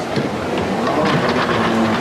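Shop escalator running: a steady mechanical rumble of the moving steps, with people's voices behind it.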